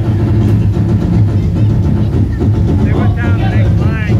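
Drum troupe's large drums played in a dense, continuous low rumble, with voices calling out over it from about three seconds in.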